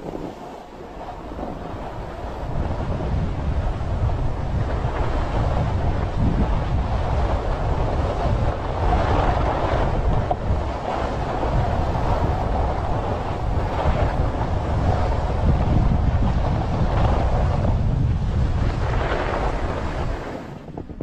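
Wind rushing over the microphone of a skier's camera during a fast descent, with the hiss and scrape of skis on packed snow. The sound builds over the first couple of seconds and then stays loud, swelling every few seconds.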